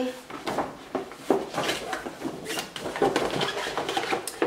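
Brown paper shopping bag rustling and crinkling as a flat cardboard box is pulled out of it, with irregular crackles and light knocks of cardboard.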